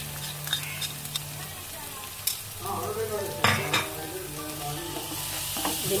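Chopped tomato and onion sizzling in oil in a nonstick frying pan while a wooden spatula stirs in the spice powder, scraping the pan with a few sharp knocks, the loudest about three and a half seconds in.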